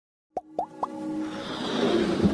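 Animated logo intro sound effects: three quick rising pops in a row, then a swelling whoosh with held musical tones building up.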